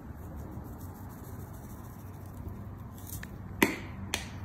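Quiet room noise with one sharp click about three and a half seconds in.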